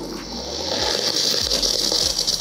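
Espresso machine steam wand being purged before steaming milk: a steady, loud hiss of steam venting into the open air.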